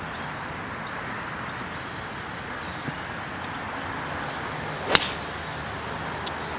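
A seven-iron strikes a golf ball once, a single sharp click about five seconds in, after a few quiet seconds of steady outdoor background hiss.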